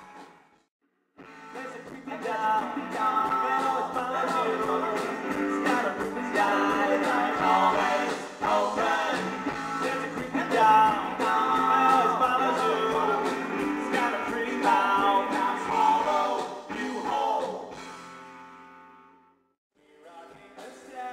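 Live rock band with electric guitars, bass and drums playing. The music cuts in about a second in after a brief silent gap and fades out near the end.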